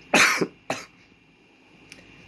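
A man coughing: one loud cough just after the start, then a shorter one about half a second later. He is down with flu and a sore throat.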